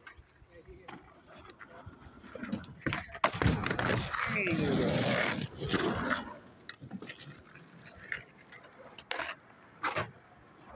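Skateboard wheels rolling over concrete, growing loud as the board passes close by from about three to six seconds in, then fading. Sharp clacks of boards hitting the concrete and voices are scattered around it.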